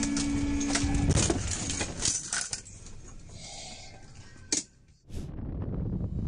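A car horn sounds as one steady tone for about a second, followed by a string of sharp knocks and clatter. The sound drops out briefly near the end.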